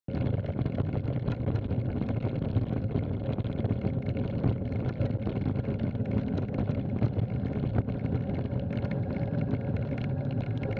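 Bicycle rolling fast over a gravel track: a steady rumble of tyres with many small rattles and clicks from the bike.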